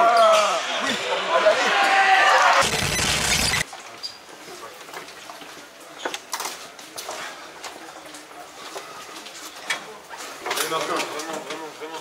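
Men's voices calling out in a sports hall, ended by a second-long burst of noise that cuts off suddenly. Then a much quieter stretch with a few scattered knocks, and voices again near the end.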